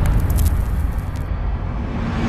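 Low, steady rumble from a cinematic intro soundtrack, a bass drone between whooshing hits, its treble dying away a little past halfway.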